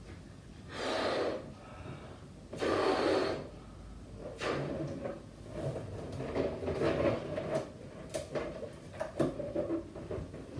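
A latex balloon being blown up by mouth: two long, forceful breaths into it about one and three seconds in. Then rubbery squeaks and rubbing as the neck of the inflated balloon is stretched and tied into a knot.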